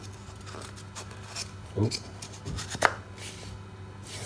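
Pine tenon being pushed into a freshly cut hollow-chisel mortise by hand: faint wood-on-wood rubbing and handling, a low thud and a sharp knock a little under three seconds in as the joint goes together.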